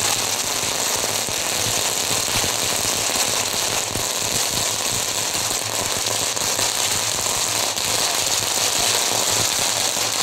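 A long string of firecrackers going off in a dense, continuous rapid crackle.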